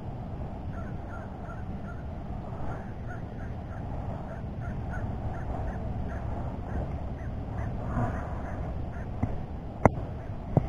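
Birds calling, a run of short calls repeated a few times a second, over a steady low rumble. One sharp knock comes just before the end.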